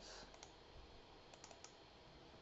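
Near silence broken by a few faint computer mouse clicks: a couple soft ones early, then a quick run of about four clicks a little past halfway.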